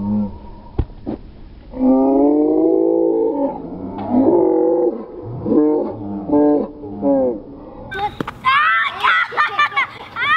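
Wordless human yelling: one long drawn-out call about two seconds in, then several shorter calls, then high-pitched excited shouting near the end. A single sharp click sounds just under a second in.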